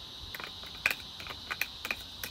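Metal spoon clicking against a glass bowl of orange juice pulp in a series of light, irregular clicks.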